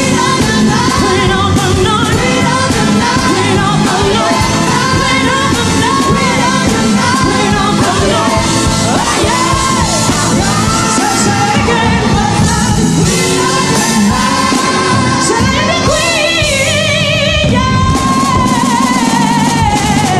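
Female singer performing a pop ballad backed by a band and symphony orchestra, ending on a long held note with vibrato near the end.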